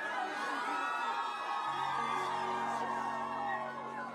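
A live band playing on stage, with whoops from the crowd; a steady low sustained note comes in a little before halfway.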